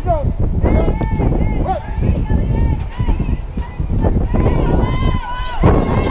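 Several high-pitched voices calling out and chanting in drawn-out, sing-song tones, typical of a softball team cheering, over a low rumble.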